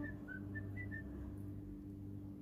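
A few short, high whistled notes in the first second, then only a low steady hum, in a lull of the background music.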